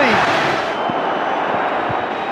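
Football stadium crowd cheering, a dense steady wash of many voices, as the home fans celebrate a goal.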